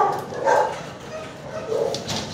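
Dog barking, with a bark about half a second in and another near the end.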